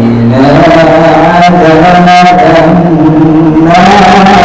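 Solo Quran recitation (tilawat) by a young male reciter into a microphone, sung in long, held melodic notes with slowly shifting pitch, loud.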